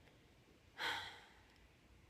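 A woman's single audible breath, a short rush of air about a second in, with near silence around it.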